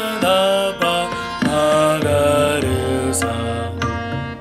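A singer sings a sargam scale exercise in A#, stepping through the notes one by one over a steady drone, with tabla keeping teen taal at about 100 beats a minute.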